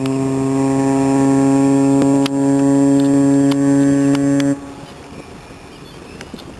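Ship's horn of the tanker Stella Polaris sounding one long, steady blast that cuts off about four and a half seconds in.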